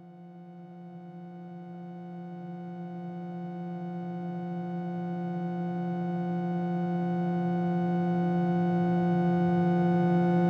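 Electronic music: a single held synthesizer note with a buzzing overtone stack, swelling steadily louder throughout, its brighter upper overtones filling in as it grows.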